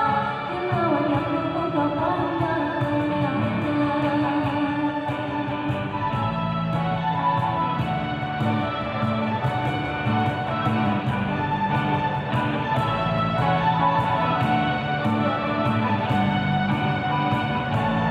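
A live band with keyboard and guitars playing dance music, with a singer's voice for the first few seconds, then instrumental with a steady beat.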